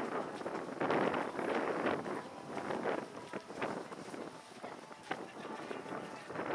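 Wind buffeting an outdoor microphone in uneven gusts, with faint indistinct voices in the background.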